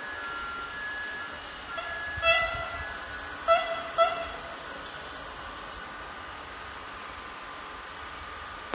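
A train horn sounds three times: a longer blast about two seconds in, then two short toots around three and a half and four seconds, over a steady background hum.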